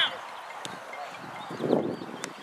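Voices shouting across an outdoor soccer field, louder in the second half, with one sharp knock of the ball being kicked about half a second in.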